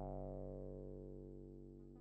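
Eurorack modular synth note: a low sawtooth from an Erica Synths Black Wavetable VCO, run through the Pittsburgh SV-1's filter and amplifier and the Black Dual VCF low-pass, with one envelope shaping both brightness and volume. The single note fades away steadily while its tone keeps darkening as the filter closes.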